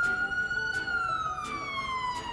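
Ambulance siren wailing: the tone holds near its highest pitch, then slides slowly downward through the second half.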